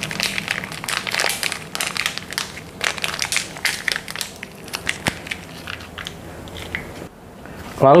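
Plastic-foil corned beef sachet crinkling and crackling as it is squeezed to push the corned beef out, in irregular bursts of crinkles for about seven seconds.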